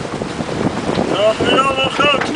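Wind buffeting the microphone on a sailing yacht under way, a steady rushing noise. About halfway through, a person's drawn-out, wavering voice comes in over it.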